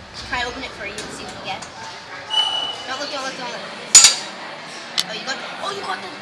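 Indoor soccer ball struck hard, a sharp bang about four seconds in and a lighter knock a second later, amid players' shouts on the pitch.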